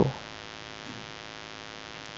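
Steady electrical hum, a buzz of many evenly spaced tones, in the recording: mains hum picked up by the microphone or its wiring.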